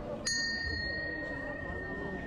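A large hanging metal bell struck once, ringing clearly. Its higher tones die away within about a second, while one steady tone lingers for more than two seconds, over the chatter of a crowd.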